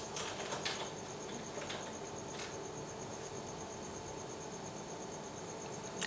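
A few faint taps of a fingertip on a smartphone's touchscreen PIN keypad, in the first two and a half seconds, over a steady, high, rapidly pulsing tone.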